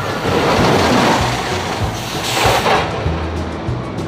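Launched roller coaster train rushing away: a loud swelling rush of noise for the first two seconds, then a second short burst a little after two seconds in as the train climbs the top-hat tower, over steady background music.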